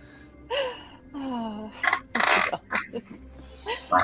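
A person's voice making non-speech sounds: a couple of short voiced hums with sliding pitch, then a loud breathy exhale, a sigh, about two seconds in.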